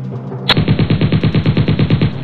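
Machine-gun sound effect: a rapid burst of shots, about ten a second, starting about half a second in and stopping near the end, over background music.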